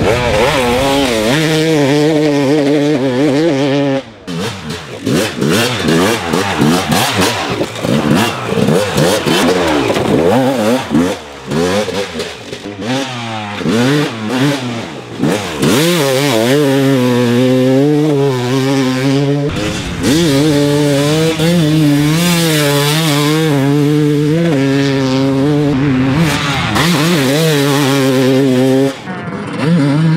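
2007 Yamaha YZ250 two-stroke single-cylinder engine being ridden hard. It revs up and down, its pitch rising and falling with the throttle, and breaks off abruptly a few times.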